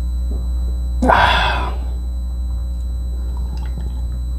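A sharp breathy exhale, the satisfied 'ahh' after a swallow of beer, comes about a second in and dies away in under a second. A steady low electrical hum runs underneath throughout.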